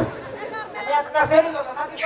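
Speech: a voice talking in short broken phrases, softer at first and louder from about the middle, with chatter behind it.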